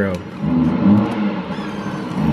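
Chainsaw engine sound carried from the next room, its revs rising and falling.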